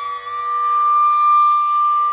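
Carnatic bamboo flute holding one long, steady note over a quieter steady drone.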